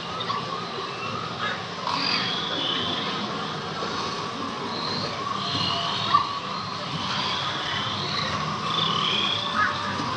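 Recorded night-forest soundscape of the Na'vi River Journey boat ride: short chirping, frog-like creature calls repeating over a steady background wash. A sharp click about six seconds in.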